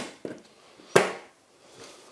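A few sharp metal clicks and one louder knock about a second in: a steel drill guide being set into a hole in a steel Parf guide rule on a workbench, and the cordless drill being handled.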